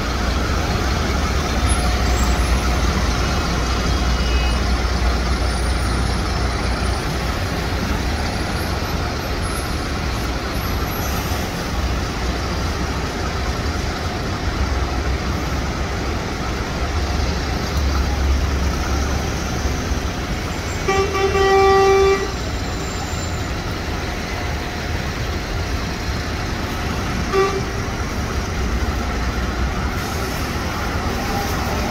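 Heavy, slow city road traffic: a steady hum of engines with a low rumble from cars, buses and trucks. A car horn honks once for about a second a little past two-thirds of the way through, and a short beep sounds near the end.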